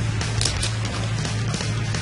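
Background music with a steady low bass line and no speech.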